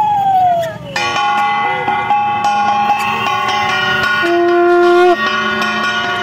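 Conch shells and bells of a Hindu puja: a long wavering call that falls away about a second in, then several held tones sounding together with bell strikes.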